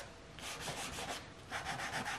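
White soft pastel stick rubbed across paper in two strokes, each under a second long, a dry hiss of pastel on paper.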